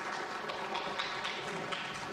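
People moving about and sitting down: shuffling, footsteps and chairs, with a scatter of light taps and knocks over a steady rustle.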